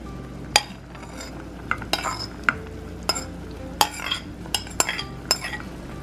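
Metal ladle clinking against a metal pot of stew as it is stirred and tofu is added: about ten sharp clinks at irregular intervals, each ringing briefly, over a low steady hum.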